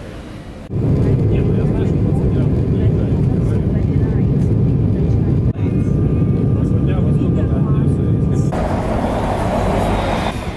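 Airliner cabin noise in flight: a loud, steady low rumble of jet engines and airflow heard from inside the cabin. Near the end it cuts abruptly to broader city street noise.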